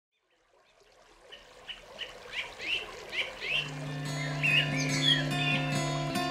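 Birdsong fading in from silence: short chirps repeated about three a second, joined about three and a half seconds in by a sustained low keyboard chord as the song's intro begins.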